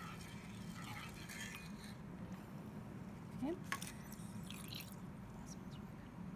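Faint trickle of deionized water squirted from a plastic wash bottle into a small glass beaker, over a low steady room hum, with one light click about midway.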